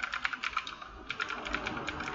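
Typing on a computer keyboard: a quick run of keystroke clicks, a brief pause about halfway, then another run of keystrokes.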